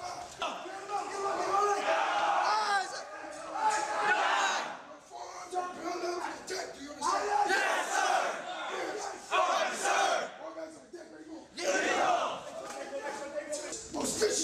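Many men shouting at once in a large room: recruits yelling responses in chorus while drill instructors bark commands over them. The shouting comes in bursts with brief breaks.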